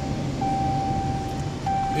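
Steady low rumble of a car cabin while driving slowly, with a thin, steady high-pitched tone that breaks off briefly twice.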